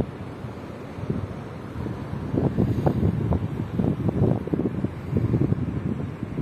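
Wind buffeting the microphone outdoors: a steady low rumble that turns gustier and louder from about two seconds in.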